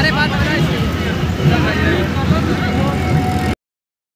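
Engine rumble and wind noise of an open vehicle in motion, with people's voices mixed in. The sound cuts off abruptly about three and a half seconds in.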